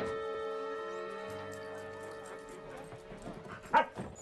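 Soft sustained music chord, then a dog barks once, short and loud, near the end.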